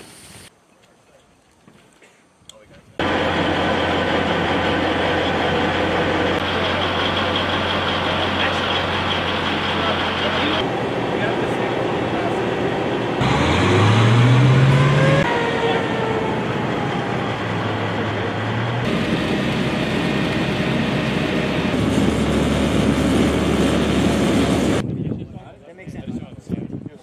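Heavy military vehicle engine, an amphibious assault vehicle's, running loudly with a steady low hum. It starts about three seconds in and rises in pitch in a rev around the middle.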